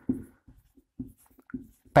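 Marker pen writing on a whiteboard: a handful of short, separate strokes as letters are written out.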